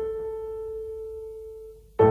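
Piano music: one held note ringing and slowly dying away.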